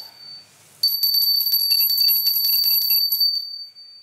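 Altar bells ringing at the elevation of the chalice during the consecration. There is one short ring at the start, then about a second in the bells are shaken rapidly for over two seconds before fading out near the end.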